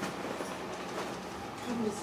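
A steady low hum under faint background noise, with a short snatch of a voice near the end.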